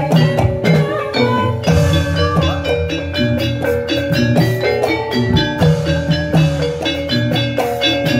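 Javanese gamelan music accompanying a jathilan dance: struck metallophones play quick, repeating melodic patterns over steady drumming.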